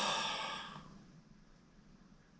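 A person's sigh of exasperation: one breathy exhale that is loudest at the start and fades out within about a second, leaving quiet room tone.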